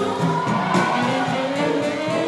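Swing jazz played by a big band, the ensemble holding full, sustained chords.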